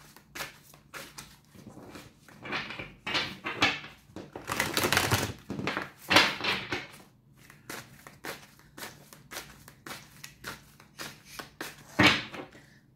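A deck of tarot cards being shuffled by hand: a long run of quick card snaps and clicks, with a few longer swishes of sliding cards around the middle.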